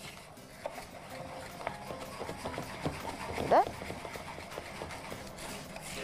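Wooden spoon stirring raw Egyptian white rice in a metal pot as it is sautéed in oil and ghee, with light scraping and small ticks against the pot. A brief rising tone sounds about halfway through.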